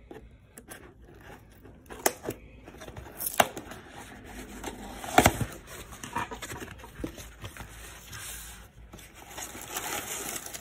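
A kraft cardboard box being handled and opened by hand: card scraping and rustling, with a few sharp knocks, the loudest about five seconds in.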